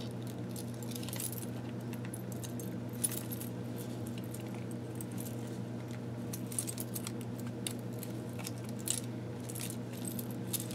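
A thick handmade paper journal being handled: pages rustling and small metal embellishments clinking in scattered light ticks, sharpest about three seconds in and again near the end. A steady low hum runs underneath.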